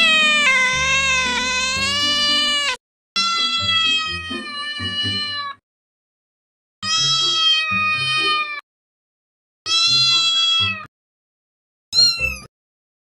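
A series of long, drawn-out cat meows with gaps of silence between them. The first meow lasts about three seconds with a wavering pitch, three shorter ones follow, and another begins near the end.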